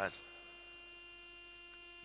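A steady, faint electrical hum with a few thin steady tones, the kind picked up by a microphone and sound system. The last of a man's word cuts off at the very start.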